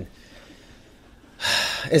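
A quiet pause, then about one and a half seconds in a man's sharp, audible intake of breath into a close microphone, just before he starts to speak.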